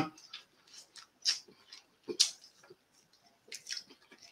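Faint chewing and swallowing of Carolina Reaper chillies: a few short, wet mouth clicks spread through a near-quiet moment.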